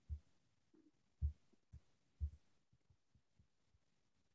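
Faint, low, dull thumps over quiet room tone: four in the first two and a half seconds, the loudest about a second in, then a few softer ticks.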